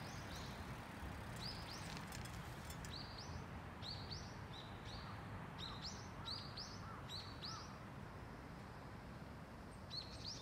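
Small birds calling in a run of short, high chirps repeated many times, thinning out after about three-quarters of the way through, over a steady low background rumble.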